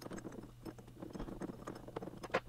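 Faint, irregular small metallic clicks and scrapes of a hex key turning a bolt through the backing plate of a small lathe's tailstock, snugging it hand tight.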